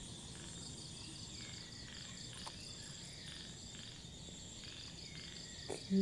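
Steady chorus of insects, likely crickets, chirring in several high pitches with an even, rapid pulse, about five pulses a second.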